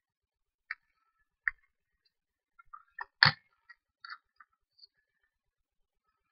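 Scattered small clicks and taps of craft tools and card being handled on a tabletop, with one louder knock about three seconds in.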